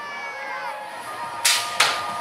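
BMX start gate dropping: a steady electronic start tone sounds, and about one and a half seconds in the metal gate comes down with two loud bangs as the riders roll off.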